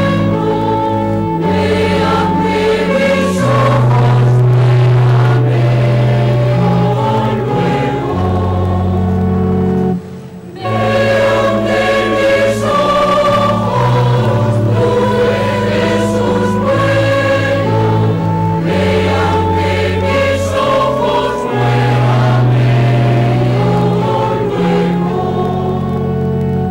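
Choir singing a sacred hymn in long held chords over sustained low notes, breaking off briefly about ten seconds in.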